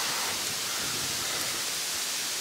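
Wind: a steady, even hiss with no breaks or knocks.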